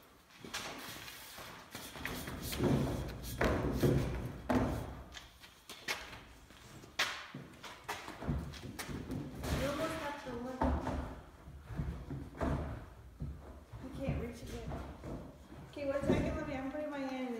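Irregular knocks, thumps and rattles from handling a thin aluminium sheet clamped between long wooden boards while it is squeezed into a bend, with low talk in between.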